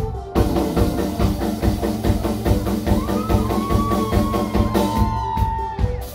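Rock band playing live on electric guitars, bass and drum kit: a short, fast, busy riff that starts just after the beginning, with one long high held note from about halfway, and cuts off just before the end.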